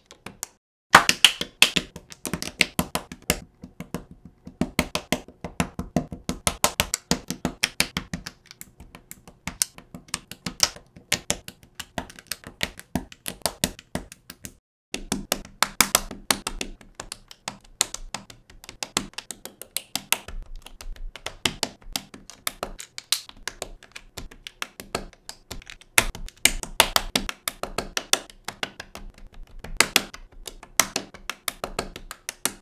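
Rapid, irregular clicking and tapping of plastic LEGO bricks being snapped together, many clicks a second. The clicking stops for a moment about halfway through, then starts again.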